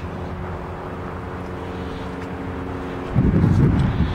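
A steady low mechanical hum holding a few constant tones, like a motor or engine running nearby. About three seconds in, a louder, rough low rumble comes in and runs to the end.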